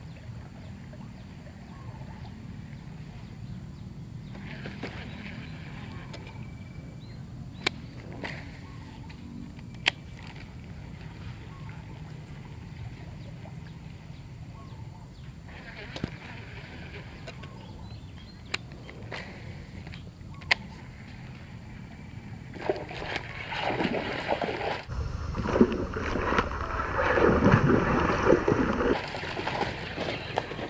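Baitcasting reel with a soft frog lure: the line whirs briefly off the spool on casts about five and sixteen seconds in, with scattered sharp clicks of the reel. From about 22 seconds in, loud splashing and churning water as a snakehead takes the frog and thrashes at the surface.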